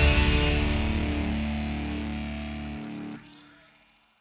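A band's final held chord, electric guitar and keyboard ringing on and fading steadily away, then cutting off about three seconds in.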